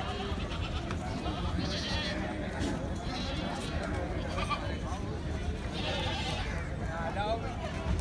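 Goats bleating a few times over a steady background of crowd chatter.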